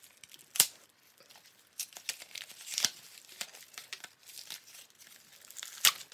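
A cheap picture frame being handled and taken apart by hand: rustling and crinkling of its cardboard back and paper photo insert, with a few sharp clicks, the loudest about half a second in and another just before the end.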